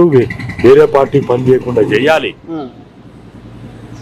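A man talking in Telugu, breaking off into a short pause about two and a half seconds in.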